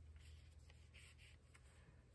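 Near silence, with faint short rubbing swishes of fingertips pressing and smoothing a small cardstock square onto a card panel, three times.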